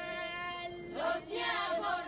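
Women's voices singing an Albanian folk song in parts: a steady held note runs underneath while a higher line is held, then fresh voices come in about a second in.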